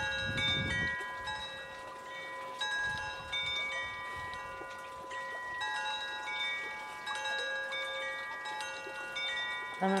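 Wind chimes ringing: many clear, sustained notes at different pitches overlap, with new notes struck every second or so.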